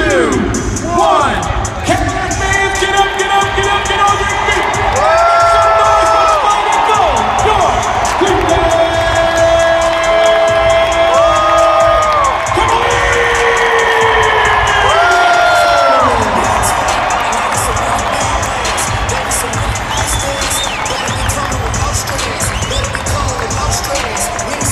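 Music over the arena's PA system, with long held notes between about 5 and 16 seconds, over a large crowd cheering.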